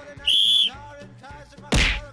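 A short, steady whistle blast, then about a second later the dull thud of a football being struck by the foot, the first touch of a juggling run.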